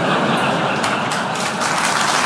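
Theatre audience applauding, a dense, steady wash of clapping.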